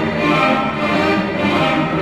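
Background orchestral music with sustained strings.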